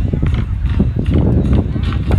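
A group of large wooden barrel drums beaten with sticks in a fast, rhythmic pattern of deep strokes.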